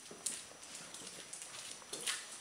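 A dog's claws clicking on a tiled floor as it walks, a few irregular ticks mixed with a person's footsteps. The American Staffordshire terrier walks unevenly because it puts no weight on its injured right hind leg.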